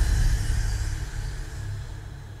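A deep rumble with music, fading away over the two seconds, from the soundtrack of a TV episode being played back.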